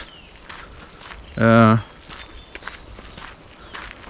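Footsteps on a sandy dirt path at about two steps a second. About a second and a half in, a man's voice holds a brief hesitant "yy", the loudest sound here.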